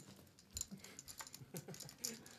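Playing cards being dealt around a poker table: a run of light, irregular clicks and taps.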